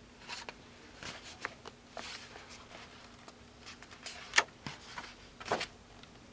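Thick, cardstock-weight pages of an art journal being turned by hand: scattered rustles and soft paper flaps, with two sharper snaps near the end.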